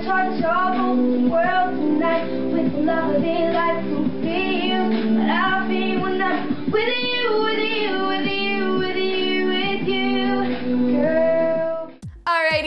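A young boy singing a song, heard through a dull, muffled home recording with no high end.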